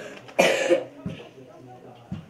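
A single short, loud cough from a person about half a second in.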